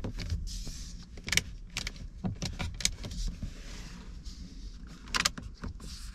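Fingers tapping, pressing and rubbing on the plastic dashboard and air-vent trim of a 2021 BMW 120i, testing the panels for give: a string of small clicks and knocks with brief scraping between them, the sharpest clicks about a second and a half in and again about five seconds in.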